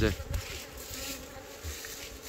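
Wild honey bees buzzing steadily at their nest in a tree hollow that has just been cut open, a strong colony disturbed by the opening.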